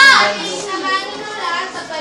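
Children's voices: kids talking and calling out over one another in a room, loudest in a short burst at the start.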